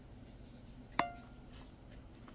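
A single light metallic clink about a second in, ringing briefly, as a small hard part is knocked while the RC truck is handled; otherwise quiet room tone.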